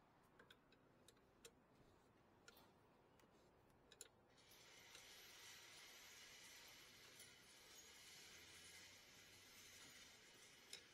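Near silence: a few faint light clicks in the first four seconds, then a faint steady hiss.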